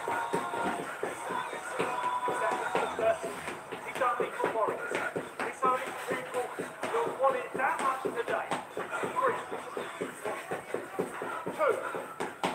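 Indistinct talking over feet shuffling and stepping on a hard floor as people shadowbox, with short knocks and scuffs throughout.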